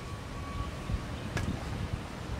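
Thin wooden slats being handled, with one light wooden click about one and a half seconds in, over a low steady rumble of outdoor background noise.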